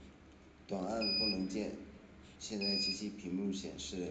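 Short, high electronic beeps, about one every second and a half, from the FM transmitter's front-panel up/down buttons being pressed to step the output power, heard over a voice.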